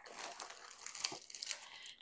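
Plastic packaging being handled, crinkling and rustling with many small irregular crackles.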